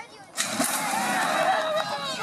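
Horse-race starting gate opening with a sudden loud crash about half a second in, then shouting voices and galloping hoofbeats as the horses break from the gate.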